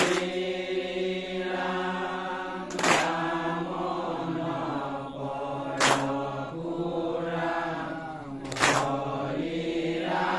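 A group of men chanting a devotional naam together, the voices held in long sustained lines that slowly shift in pitch. A pair of hand cymbals clashes and rings about every three seconds, four times.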